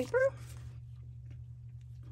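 A paper page of a small handmade journal turned by hand, giving only a faint rustle over a steady low electrical hum, after a brief voiced sound at the very start.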